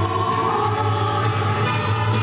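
Live chamber ensemble playing: a woman sings long held notes into a microphone, with flute and bowed strings accompanying her.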